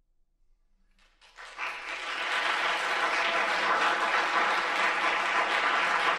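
Near silence, then audience applause breaks out about a second in and quickly swells to steady, sustained clapping.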